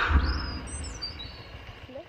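Birds chirping in short high sliding calls, over a low rumble that is loudest at the start and then fades.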